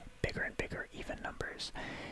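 Close-miked whispering voice speaking softly, with hissy consonants.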